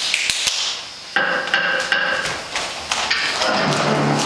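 A few sharp knocks, then music starts abruptly about a second in and carries on with held notes.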